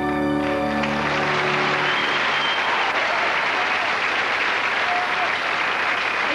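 The last held chord of a song's orchestral backing dies away about a second in, and an audience breaks into sustained applause.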